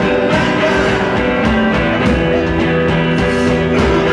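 Live rock band playing, with guitar, drums and a man singing.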